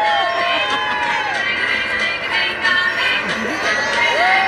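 Music for a children's dance, with sung notes that swell and slide up and down, heard over the chatter of an audience.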